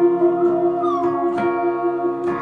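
Keyboard band playing an instrumental: a held electric organ chord with a falling, gliding tone sliding down about a second in, and a few sharp percussive hits.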